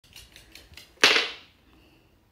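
A small dog's claws clicking on a hard wooden floor, about five light ticks a second. About a second in comes one loud clank that rings briefly as the dog drops its collar, with a metal buckle, onto the floor.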